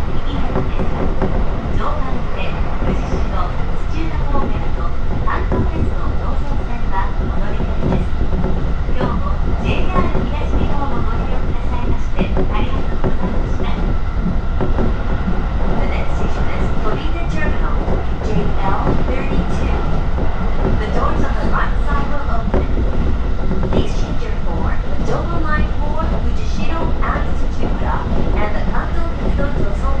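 Inside a JR East Joban Line commuter train car running between stations: a steady, loud rumble of wheels on rail, with frequent short clicks scattered through it.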